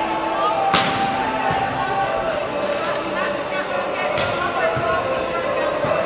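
Volleyball striking with sharp smacks in a gymnasium: one loud hit about a second in, and a second, weaker one a little after four seconds, with smaller knocks near the end.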